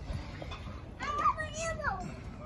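Children at play: after a quieter first second, a child's high-pitched voice calls out, its pitch bending up and down.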